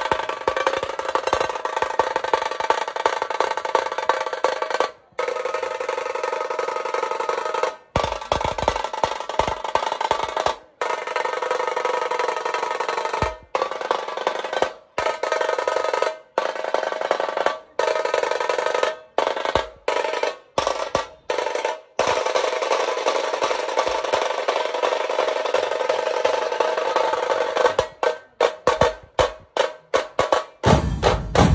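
Loud drumming with music. The sound stops abruptly for an instant a dozen or so times and starts again, with these breaks coming in quick succession near the end.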